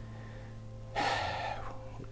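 A man's sharp intake of breath about a second in, lasting well under a second, taken before he speaks, over soft sustained background music.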